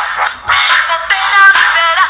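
Electronic pop song recording: a synthesized backing track, joined about a second in by a pitch-processed singing voice.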